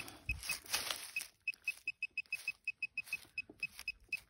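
XP MI-4 metal-detecting pinpointer beeping: short, high beeps at one pitch, a few spaced out at first, then quickening to about six a second as the probe closes on a buried metal target, which she takes to be probably a bottle top.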